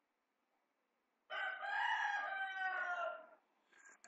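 An animal call in the background: one long call of about two seconds, coming in about a second in and sliding down in pitch at its end.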